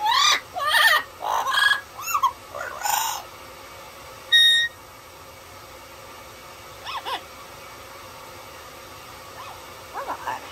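Amazon parrot calling: a quick run of warbling, squawky calls that bend up and down in pitch over the first three seconds, then one short clear whistle a little after four seconds, and two soft short calls near seven seconds.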